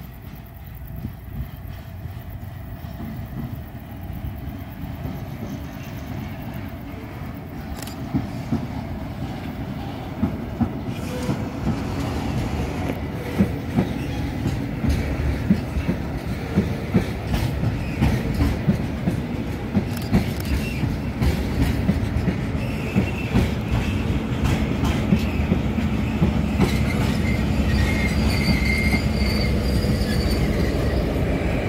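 A slow freight train of tank wagons pushed by a PKP Cargo SM42 diesel-electric shunting locomotive, coming steadily closer and louder. Its wheels click and knock over the rail joints, more and more often from about a third of the way in, over a low running rumble. A wheel squeal rises in the last few seconds.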